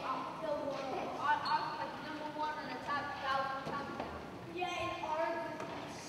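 Young performers' voices speaking lines on stage, too distant and unclear to make out words.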